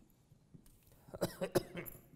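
A person coughing, a short run of coughs about a second in.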